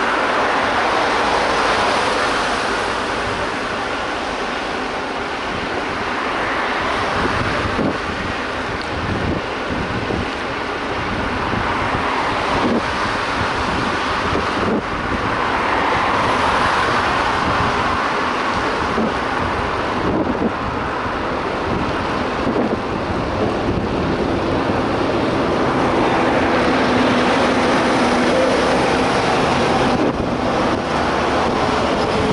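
Wind rushing over an action camera's microphone on a moving bicycle, mixed with road traffic from cars and trucks passing in the next lane. Near the end a truck's engine grows louder as it draws alongside.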